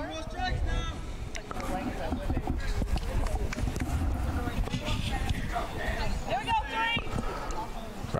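Distant voices calling out across an open ball field, briefly just after the start and again near the end, over a steady low rumble.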